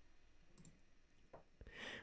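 Near silence, broken by a single faint computer mouse click about a second and a half in, then a faint breath near the end.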